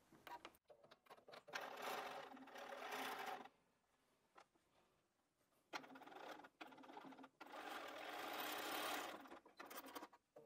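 Electric sewing machine stitching a seam through a small patchwork piece, in two short runs of about two and four seconds with a brief pause between them.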